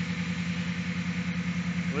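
2002 Chrysler Concorde's V6 engine idling as a steady low hum with a regular pulse. The idle is one the owner calls a bit high and inconsistent, which he puts down to a major vacuum leak.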